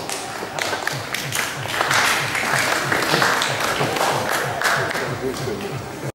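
An audience applauding, with crowd voices, as music with a steady low beat plays.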